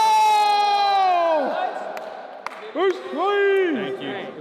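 Men shouting and whooping: one long, held "yeah" that drops in pitch as it ends, then two shorter whoops near the end. A couple of sharp knocks sound in between.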